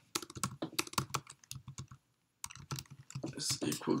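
Typing on a computer keyboard: a quick run of keystrokes, broken by a short pause about halfway through, as a line of code is entered.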